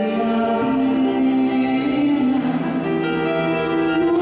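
Slow, sustained music from an electronic keyboard: long held chords with a melody moving in steps from note to note.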